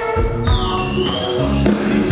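Live rock band playing: a drum kit striking a steady beat under held guitar and bass notes, with a high note that slides down and levels off about half a second in.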